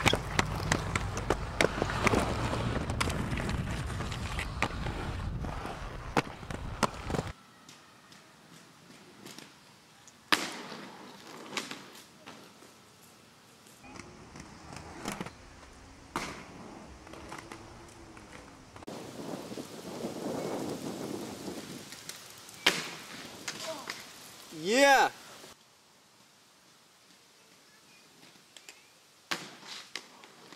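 Inline skate wheels rolling over skatepark concrete with sharp clicks of the skates for the first several seconds. After a cut, quieter footage with scattered sharp knocks, and a short shout that rises and falls in pitch about 25 seconds in.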